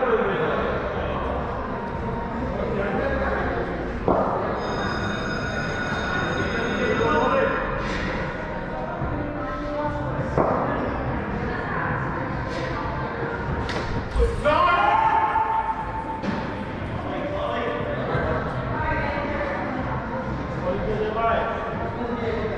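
Players' voices calling across a large, echoing indoor cricket hall, with a few sharp knocks of the hard indoor cricket ball about four, ten and fourteen seconds in.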